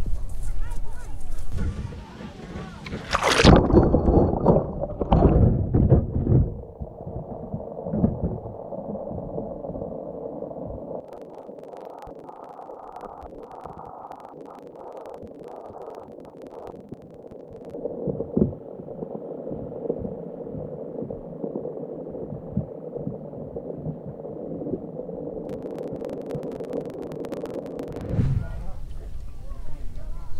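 A wire crab trap holding a GoPro splashes into seawater about three seconds in. After that the sound is heard from the camera underwater: a muffled gurgling wash with a steady hum and scattered faint clicks, until the sound opens up again near the end.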